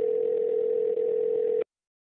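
A smartphone's call-progress tone on a call being dialed: one steady, mid-pitched tone with a thin, telephone-band sound. It cuts off suddenly near the end.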